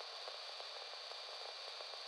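Faint steady hiss with no other sound: a quiet noise floor.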